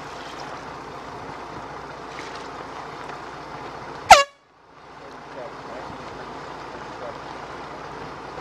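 One short, very loud air-horn blast about four seconds in. It is a race committee's signal as the spinnaker-flying sailboat passes the finish mark. It sounds over steady wind and water noise, and the recording drops out for a moment right after the blast, then fades back in.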